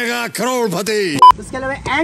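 A man's voice in exaggerated, drawn-out sing-song tones, cut by a brief, very loud steady-pitched bleep about a second in, the kind of tone added in editing. Speech follows it.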